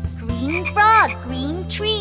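Cartoon frog croaks: a quick run of short calls, each rising then falling in pitch, over a steady low backing of children's song music.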